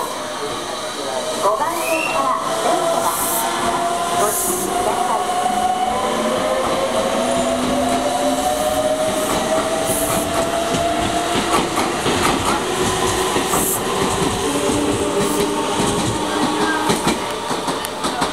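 A red Meitetsu electric express train pulls away from the platform. Its motors whine and rise in pitch as it picks up speed, and its wheels clatter in a string of clicks over the rail joints.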